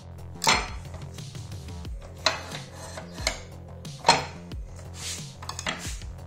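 A series of sharp metallic knocks and clinks as a steel square pipe is handled in the cut-off saw's vise against the stop limiter. The loudest knocks come about half a second and four seconds in, with a quick cluster near the end. Background music runs underneath.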